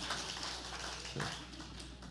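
A small group of people clapping, the applause thinning out into scattered claps and fading over the first second, with a brief spoken "yeah" just after.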